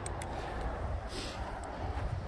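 Wind and handling rumble on a phone microphone while walking on a dirt trail, with two small clicks near the start and a brief scuff about a second in.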